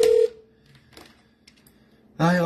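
A steady electronic telephone tone stops about a quarter second in. Then near quiet with a few faint taps as an incoming call is picked up.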